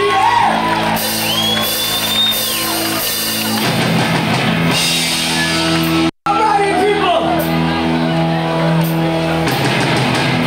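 Live punk band playing loud distorted electric guitars and bass, with a vocalist shouting and singing over them, recorded in a large hall. The chord shifts about three and a half seconds in, and the sound cuts out for an instant about six seconds in.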